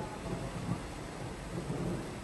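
Torrent of floodwater rushing across a road, a steady rushing noise with a heavy low rumble.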